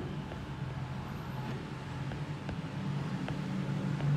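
Steady low background hum, with a few faint light taps of a stylus writing on a tablet screen.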